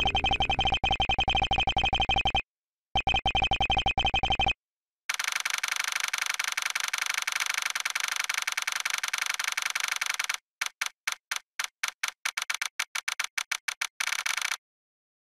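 Edited electronic glitch sounds: a rapidly pulsing buzz that cuts out twice for about half a second, then a steadier, denser buzz for about five seconds, which breaks into a stutter of short repeated pulses that come faster near the end.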